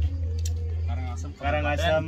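People talking in a group, with a low steady hum underneath that cuts out briefly just before the last half-second.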